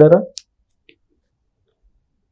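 A man's voice finishing a sentence, then a single short click and near silence for the rest of the pause.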